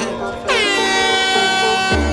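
DJ air-horn sound effect sounding once in a music mix. It comes in about half a second in with a quick downward sweep, then holds steady for about a second and a half before cutting off.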